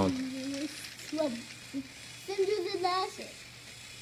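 A voice humming and singing in short wavering phrases, over the faint steady whir of a battery-powered toy train running on plastic track.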